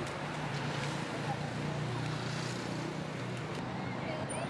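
Urban street ambience: a motor vehicle's engine hum running steadily under general traffic noise, with indistinct voices of passers-by in the background.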